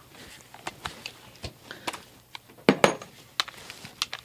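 Irregular metallic clicks and clinks of a socket ratchet and hand tools handled against the engine, with a few louder knocks near the end.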